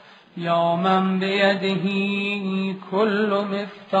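A man's voice chanting an Arabic supplication, a litany of the names of God, on a steady held pitch in two phrases: a long one, then a shorter one that wavers near the end.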